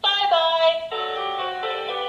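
An electronic talking alphabet poster's built-in speaker playing a short electronic tune of a few held notes, changing pitch about three times.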